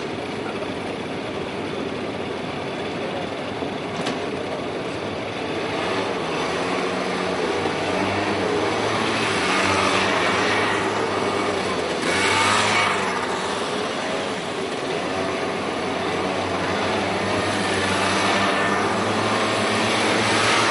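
A group of small motor scooters running, riding off and passing close one after another; the engine sound swells as they go by, most strongly about halfway through and again near the end.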